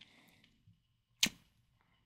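Close-miked mouth sounds of someone chewing gummy candy: soft chewing for the first half second, then one sharp, wet click a little over a second in.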